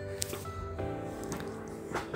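Background music with steady held notes, over soft squishing and a few small splashes of lentils in water being stirred in a metal pot by hand and then a ladle.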